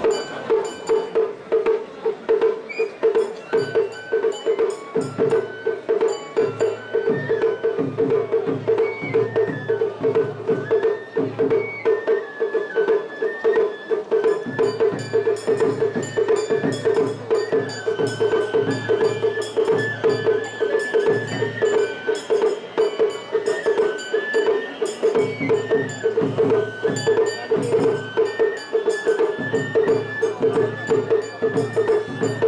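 Japanese festival music: a high flute melody stepping between notes over drums and sharp struck percussion, with a steady pulsing sound beneath.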